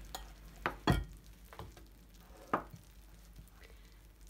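A glass baking dish of freshly baked cinnamon rolls set down and shifted on a table with an oven mitt: a few light knocks, the loudest about a second in and another about halfway through.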